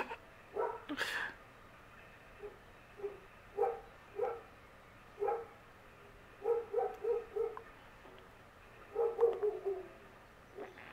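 A dog barking, single barks spaced out and then quick runs of three or four barks. A person laughs about a second in.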